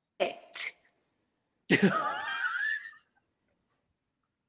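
A person's non-speech vocal sounds: two quick breathy bursts near the start, then a longer pitched one about two seconds in, with no words.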